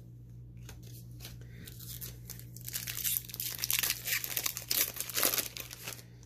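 Foil wrapper of a Magic: The Gathering set booster pack being torn open and crinkled, with dense crackling and small clicks that build up about two seconds in, over a faint steady hum.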